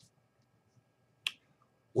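A single short, sharp click about a second in, against otherwise quiet room tone.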